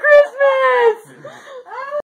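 A woman's high-pitched emotional voice, crying out without words: a short cry, a long note falling in pitch, then a shorter rising one near the end.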